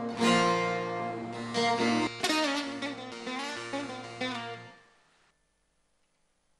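Bağlama (long-necked Turkish saz) played in plucked notes over a steady low held tone from a Korg Pa800 keyboard. The music stops about five seconds in.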